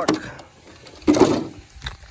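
The plastic body shell of an Arrma Infraction RC car being pulled off its chassis: a short rustling scrape about a second in.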